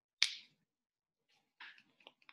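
One sharp snap about a quarter second in, dying away quickly; the rest is nearly silent.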